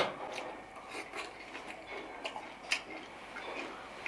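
Faint chewing of a mouthful of crisp-fried mandarin fish: scattered small clicks and crunches, one a little louder just before three seconds in.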